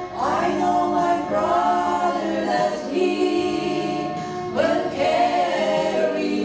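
Three women singing a gospel song together in harmony into microphones. The voices come in about a quarter second in over a held chord, and a new phrase begins near the end.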